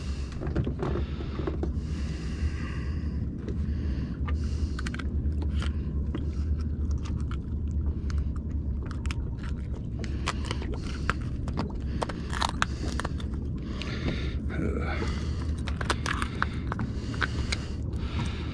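Steady low rumble under many small clicks, taps and scrapes from a flounder being handled and unhooked over a boat deck.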